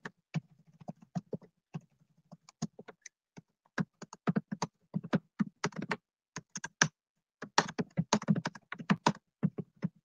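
Typing on a computer keyboard: irregular runs of key clicks broken by short pauses.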